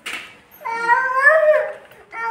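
A small child's single drawn-out whine, about a second long, rising a little in pitch and then falling, after a brief rustling noise at the start.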